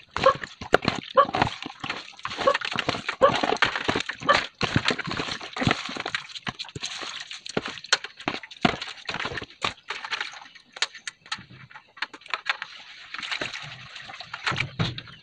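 Crabs being scrubbed by hand in a metal basin of water: splashing and many sharp knocks of shells against the basin. An animal calls repeatedly over the first few seconds.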